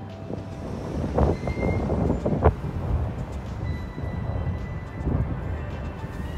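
City street traffic: a steady low rumble of vehicles, with a couple of sharper knocks between one and three seconds in.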